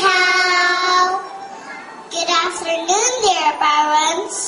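Young girls' voices singing on stage: one long held note, then after a short pause a phrase that rises and falls in pitch.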